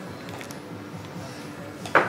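Quiet background music, with faint handling ticks and one sharp knock on a wooden cutting board near the end as the boning knife and chicken leg are handled.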